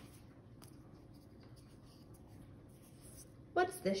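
Faint rustling with a couple of soft clicks from hands handling the phone camera and a small foam shape, then a woman's voice near the end.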